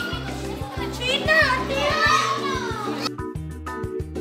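Children shouting and chattering at play over background music with a steady beat; the children's voices cut off abruptly about three seconds in, leaving only the music.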